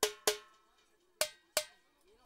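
Four sharp percussion strikes with a short pitched ring, in two quick pairs about a second apart.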